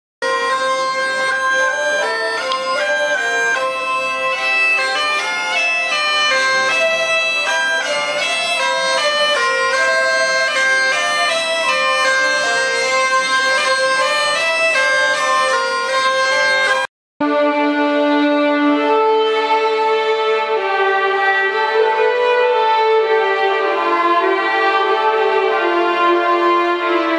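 A bagpipe plays a fast melody over its steady drone for about 17 seconds. After a brief silent cut, a small group of violins plays a slower, sustained passage.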